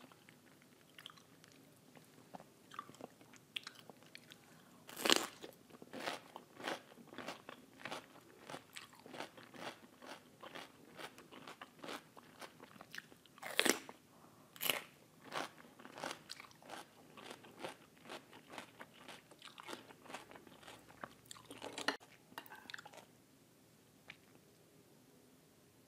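Close-miked bites into a fresh cucumber slice, followed by crisp crunching chews at about two a second. The loudest crunches come with a bite about five seconds in and another near the middle.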